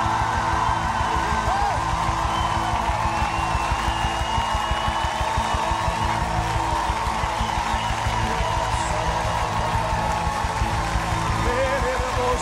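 Live gospel worship music: a band plays a steady beat while a choir and congregation sing a praise song.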